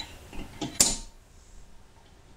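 A steel pin bolt clicking against and into the cross hole of a DuraBlue X-33 pin axle as it is test-fitted: a few light clicks, then one sharp metallic click a little under a second in. The hole proves still tight, not wallowed out.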